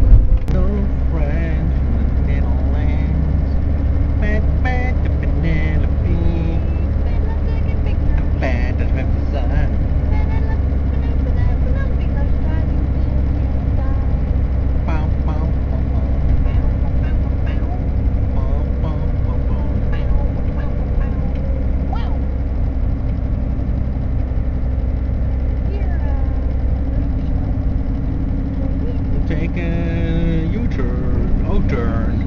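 Steady low rumble of a 1983 motorhome's engine and road noise heard inside the cab while driving, with faint wavering sounds over it.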